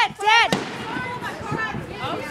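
A firework going off: one sharp bang about half a second in, followed by a few faint pops and crackles.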